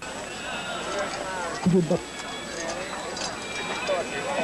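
Indistinct voices of people talking, with one louder voice breaking out briefly just under two seconds in, over a few faint clicks.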